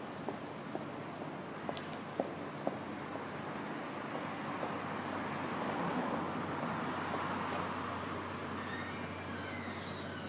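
Outdoor city street ambience: a steady wash of traffic noise with a low hum and scattered light clicks, swelling a little around the middle.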